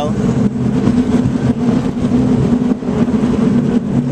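Steady low mechanical hum with several held low tones, like street traffic or a running engine, unchanged throughout.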